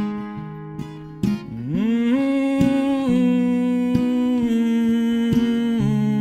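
Plucked acoustic guitar with a man's wordless hummed melody that glides up into a long held note about a second and a half in, then steps down in pitch twice.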